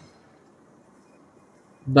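A pause in a man's narration with only a faint background hiss, then his voice comes back in just before the end.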